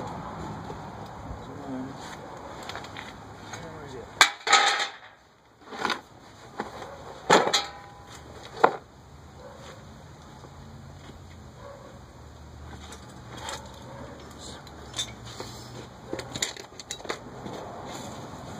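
Metal clanks and clicks of bolts and tools being worked on a steel mower frame, with a handful of sharp knocks between about four and nine seconds in and lighter taps after.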